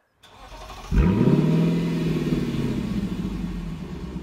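A car engine starts about a second in, its pitch sweeping up in a quick rev, then holding and slowly easing down as it settles.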